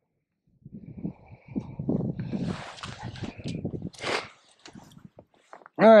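Handling noises close to the microphone as a small bass is handled on the ice: a few seconds of irregular rustling and knocks, with two short hissy bursts, fading to a few light clicks near the end.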